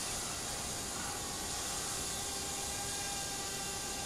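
Steady hiss with the faint, steady whine of small quadcopter drones flying overhead.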